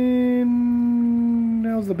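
A man's voice holding one long drawn-out "and…" on a single steady pitch. It bends down near the end as he goes on talking.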